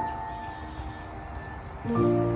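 Soft background music of sustained, held chords, with a fuller, lower chord coming in near the end.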